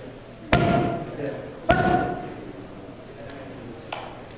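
Two gloved punches landing hard on a trainer's focus mitt, a little over a second apart, each a sharp smack with a brief ring in the room. A lighter tap follows near the end.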